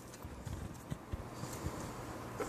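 A spatula scraping thick filling down the sides of a metal stand-mixer bowl, with a few soft, irregular knocks as it bumps the bowl.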